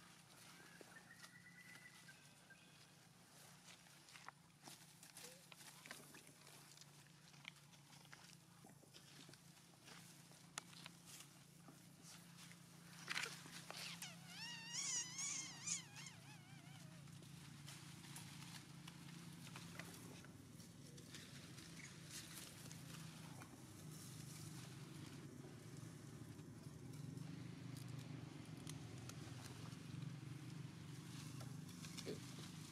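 Quiet outdoor ambience with faint scattered rustles and clicks in grass and leaf litter. About halfway through comes a brief high, wavering squeal, a young long-tailed macaque's call.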